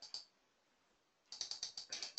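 Faint clicks from working a computer while changing chart settings: a single click just after the start, then a quick run of small clicks in the second half.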